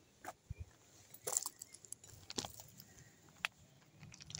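Loose limestone gravel clicking and crunching underfoot: four separate faint clicks of stone on stone, about a second apart.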